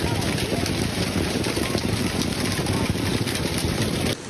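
Golf-ball-sized hail pelting down hard: a loud, continuous clatter of countless hailstones striking. It stops suddenly at the end.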